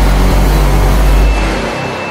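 Loud, deep rumble with a wash of noise: the sustained tail of a cinematic boom hit in title-sequence music, fading away in the last half second.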